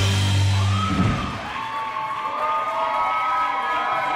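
A live rock band's final chord rings out and stops about a second in, and the audience cheers and whoops.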